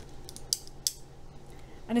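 Metal coffee measuring spoon's bag-clip arm being worked open and shut, giving a few light metallic clicks; the two sharpest come about half a second and just under a second in.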